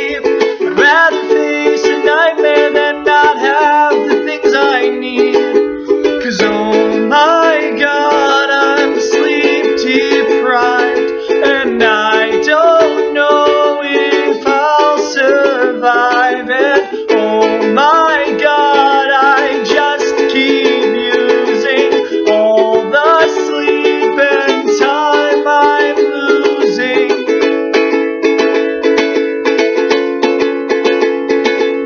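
Ukulele strummed in steady chords, with a man singing over it.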